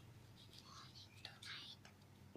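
Near silence: room tone with a few faint, soft hissy noises around the middle.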